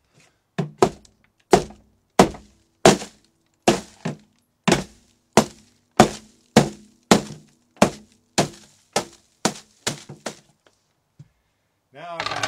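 Hammer blows breaking up a block of dry ice in a plastic cooler: about sixteen sharp, evenly paced strikes, a little under two a second, stopping about ten seconds in.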